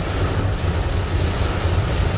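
Heavy rain falling on a car's roof and windshield, heard from inside the cabin over a steady low rumble of the moving car.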